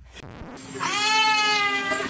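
An animal's long call, starting about a second in and held steady for about a second.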